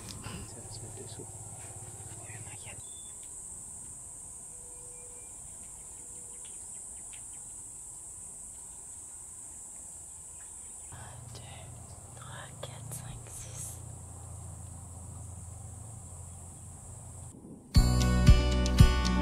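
A steady, high-pitched insect drone under faint outdoor ambience with distant low voices; the drone stops abruptly about eleven seconds in, leaving a low rumble. Guitar music starts at the very end.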